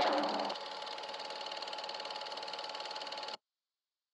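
Film projector running: a fast, even mechanical clatter with a faint steady tone, which cuts off abruptly about three and a half seconds in.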